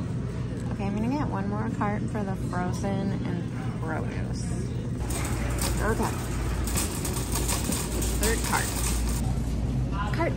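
Store hubbub with an indistinct voice, then from about five seconds in a paper shopping list crinkling as it is unfolded and handled, over a low rumble.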